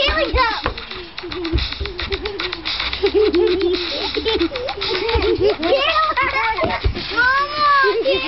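Young girls laughing and giggling with wordless playful vocal sounds, ending in a high squeal that rises and falls.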